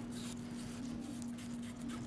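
Quiet background: a faint steady hum with a few light scratchy rubbing noises.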